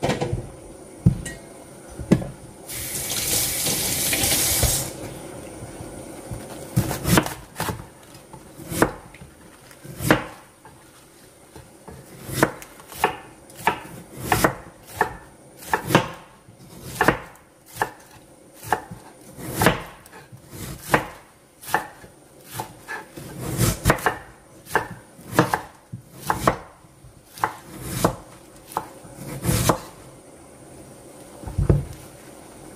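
Chef's knife slicing a napa cabbage leaf into strips on a wooden cutting board, each cut ending in a knock of the blade on the board. The strokes are sparse at first, then settle into a steady rhythm of about two a second. A hiss lasting about two seconds comes near the start.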